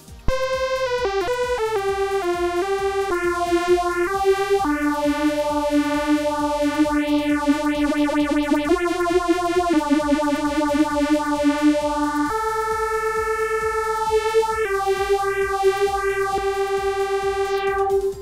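DIY modular synthesizer playing through a homemade phaser module: a quick run of falling notes, then longer held notes that change every few seconds. A slow sweep moves through the upper part of the tone as the phaser's rate is turned.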